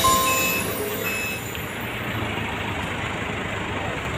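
Forklift engine running steadily. A few high music notes fade out in the first second.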